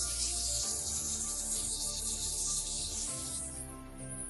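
Background music with slow, sustained notes, overlaid by a steady high hiss that fades out near the end.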